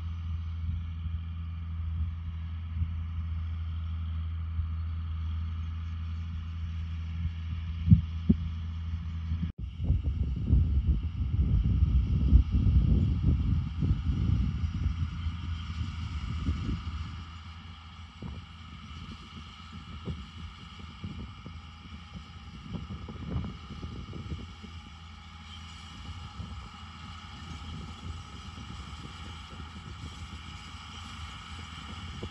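John Deere 4955 tractor's six-cylinder diesel engine running steadily under load as it pulls a 30 ft air drill, heard from across the field with a steady whine over the engine hum. After a sudden change about ten seconds in, wind buffets the microphone with a low rumble that eases off after a few seconds.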